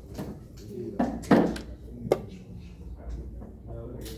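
Low voices in a small room with a few sudden knocks on a table: a louder, thudding burst just after a second in and a sharp click about two seconds in.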